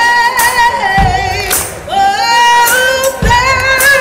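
A woman singing long, held blues notes with a wide vibrato, live, over a slow beat of deep drum thumps and sharp percussion hits.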